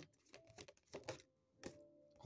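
A deck of cards being shuffled by hand, quietly: a few soft clicks and flicks of the cards against one another.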